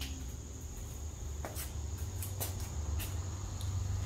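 Steady background room tone: a low hum with a thin, steady high-pitched whine over it, and a few faint ticks.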